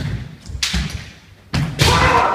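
Kendo fencers in a wooden-floored dojo: a sharp thud of a bare-foot stamp at the start and a clatter of bamboo shinai. Another stamp comes about a second and a half in, followed by a loud, drawn-out kiai shout.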